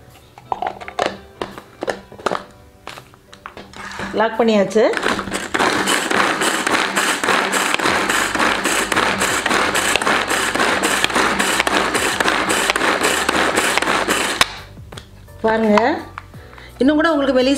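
Pigeon Handy plastic pull-cord chopper being worked by repeated tugs on its cord, its three blades whirring and chopping green chillies inside the bowl. A few clicks and knocks come first as the lid goes on, then the whirring chopping sets in a few seconds in and stops abruptly shortly before the end.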